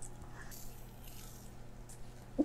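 Quiet room tone with a low steady hum and only faint small sounds.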